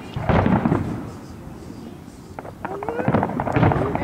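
Aerial fireworks display going off at a distance: a cluster of bangs and crackling right at the start, a quieter lull, then a second run of crackling bangs from about two and a half seconds in.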